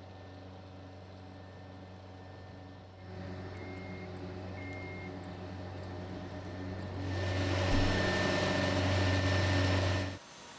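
Steady low machinery hum that steps up about three seconds in. Two short high beeps come soon after. From about seven seconds a louder rushing noise joins the hum, and both cut off abruptly at the end.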